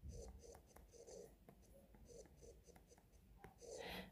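Faint light taps and scratches of a stylus writing on a tablet's glass screen.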